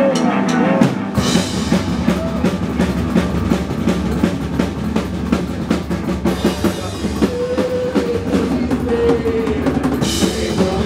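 Psychobilly band playing live without vocals: drum kit, upright bass and electric guitar. The bass and drums come in fuller about a second in, and the guitar holds a few sustained notes near the end.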